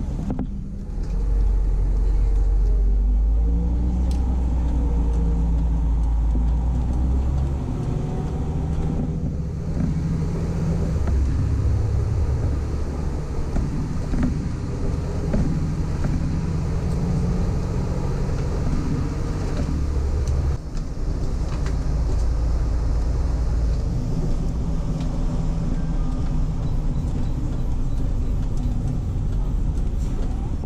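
Articulated DAB city bus's diesel engine pulling and running steadily under way, heard from the driver's cab. The low drone shifts in pitch and drops briefly about nine and twenty seconds in.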